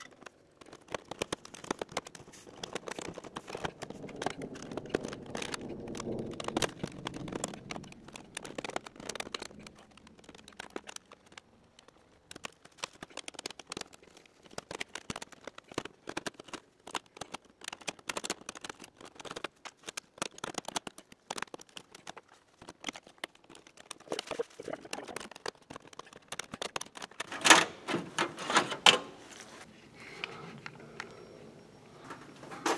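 Irregular clicking and ticking of hand work with a screwdriver on a sheet-metal exhaust vent hood mounted in corrugated plexiglass, with a louder burst of clatter near the end.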